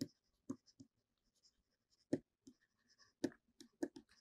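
A stylus writing by hand on a pen tablet: faint, irregular short ticks and scratches as the strokes of the letters go down.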